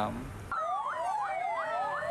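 Fire engine siren starting about half a second in: a fast yelp of about five falling sweeps a second over a slower wail that drops steadily in pitch.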